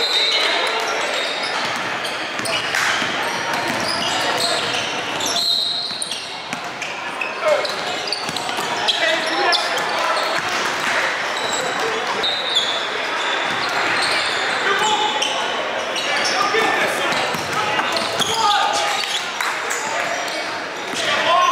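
Live court sound of a basketball game in a large, echoing gym: a ball bouncing on the hardwood floor amid players' and spectators' voices, with short high squeaks throughout.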